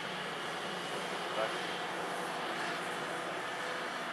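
Volvo EC700B LC crawler excavator's diesel engine running steadily under load, heard from a distance, as its boom and bucket swing over to load a dump truck.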